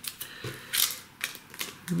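Cardboard mailer, taped shut, being handled and worked open by hand: a few short scraping, crackling rustles of card and tape.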